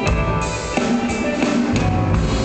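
Live rock-and-roll band playing, with the drum kit (bass drum and snare) prominent over bass and guitar; a low held note comes in near the end.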